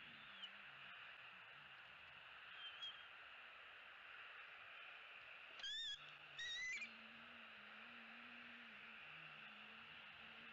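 Bald eagle calls: two short, high-pitched, wavering piping calls close together just past the middle, with a couple of faint short chirps earlier.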